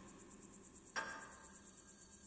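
Faint, high, rapidly pulsing chirr, cricket-like, with a soft ringing tone that starts about a second in.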